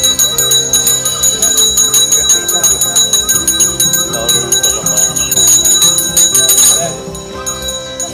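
A small brass puja hand bell rung rapidly and without pause during a worship ritual. Voices sound underneath, and the ringing stops about seven seconds in.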